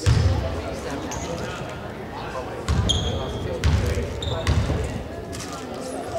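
A basketball bouncing on a hardwood gym floor as a player dribbles at the free-throw line. There is one bounce at the start, then three more about a second apart in the middle.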